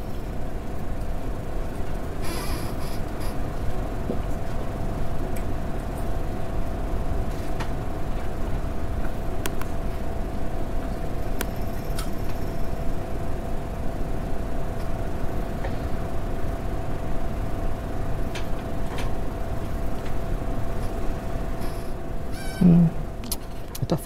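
Steady room noise with a constant hum, a few faint clicks scattered through it, and a short voice sound near the end.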